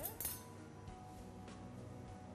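Soft background music with a few light clinks of kitchenware just at the start.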